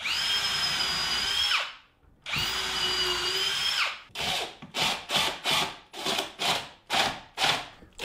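Cordless drill turning a countersink bit into screw holes in a hickory stool top. It makes two steady runs of about a second and a half each, then a quick string of short bursts, about two a second.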